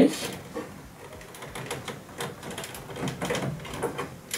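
Small irregular plastic clicks and cable rustling as a keyed data cable plug is worked onto the pins of a Vaillant VRC calormatic heating control module.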